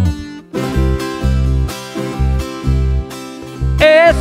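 Tiple strummed over a pulsing electric bass line, picking up again after a brief break about half a second in. A singing voice comes in right at the end.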